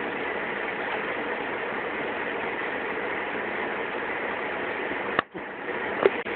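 Steady hiss-like noise with no tones or rhythm, broken by a sharp click and a brief drop in level about five seconds in.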